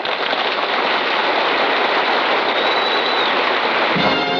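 Studio audience applauding on an old radio show recording, a dense, steady clatter of many hands greeting the singer's entrance.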